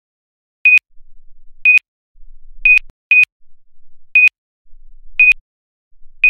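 Card payment terminal keypad beeping as its keys are pressed: six short, high beeps, about one a second, with two close together around the middle.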